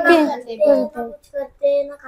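Children's voices answering a question, with some syllables drawn out and held near the end.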